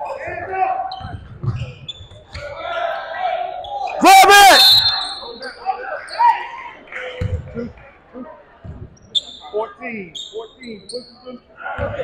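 Basketball game sounds on a hardwood gym court: sneakers squeaking, the ball thudding as it is dribbled, and voices calling out. The loudest moment is a burst of squeaks about four seconds in.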